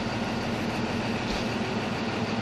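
Large diesel engine idling with a steady, even low hum, from the fire engine standing by on the forecourt.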